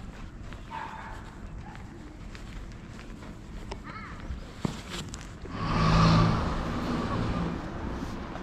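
Residential street ambience, with one louder sound swelling up a little past halfway and fading over about two seconds.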